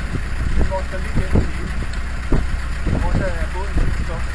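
37 hp Bladt marine diesel engine running steadily, a constant low drone.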